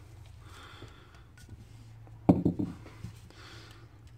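Folded paper slips rustling faintly as they are tipped out of a cup and spread by hand, with a short vocal sound from the man a little over two seconds in.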